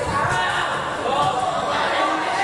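Dull thuds of boxing gloves landing during an exchange in the ring, over shouting voices from the corners and the crowd, echoing in a large hall.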